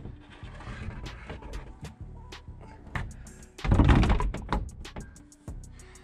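Background music plays under light knocks and scrapes as a side-by-side roof panel is shifted and guided onto its windshield visor. A louder bumping comes about three and a half seconds in, lasting under a second.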